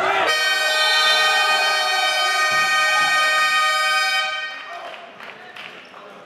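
Gym scoreboard buzzer sounding one long, steady electronic tone for about four seconds, cutting off about four seconds in: the end-of-game signal. Shouting voices are heard just before it, and quieter voices after.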